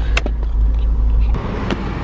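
Car cabin noise from a moving car, with a heavy low rumble that drops away about two-thirds of the way through, and a couple of short knocks.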